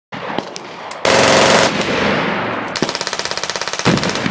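Automatic gunfire: a loud burst about a second in that trails off into echo, then a rapid, even string of shots near the end.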